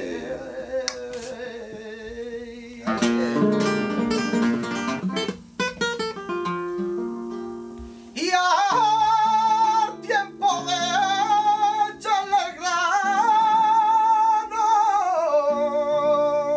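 Flamenco guitars playing, with a run of strummed chords a few seconds in. From about halfway, a man sings a long, wavering cante line over them.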